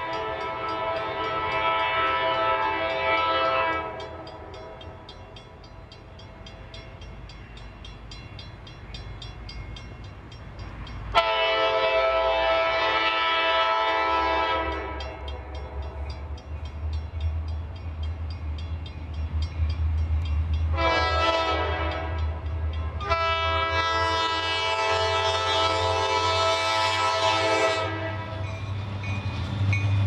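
CSX diesel locomotive's multi-chime air horn sounding the grade-crossing signal of long, long, short, long blasts, the last one the longest. A low diesel engine rumble grows louder in the second half as the locomotive comes close.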